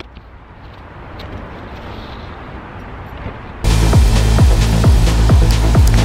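Snow being brushed off a car's windshield, a soft even hiss. About three and a half seconds in, loud music with a heavy beat and deep falling bass notes cuts in suddenly.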